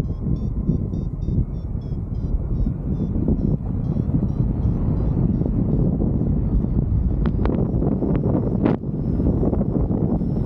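Airflow buffeting the microphone of a camera on a paraglider in flight, a steady rushing roar. Faint rapid high pips sound over it during the first few seconds.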